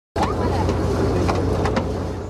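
A boat's engine running steadily under the voices of a crowd, with a few sharp knocks and clicks.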